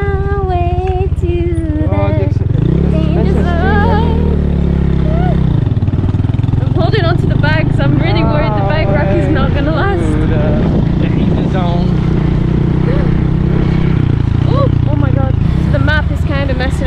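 Small motorcycle engine running under load on a rough dirt road. It rises in pitch about two and a half seconds in and drops back around five and a half seconds, with voices talking over it at times.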